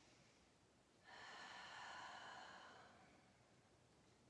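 A woman's single audible breath, about two seconds long, starting sharply about a second in and fading away, over faint room tone.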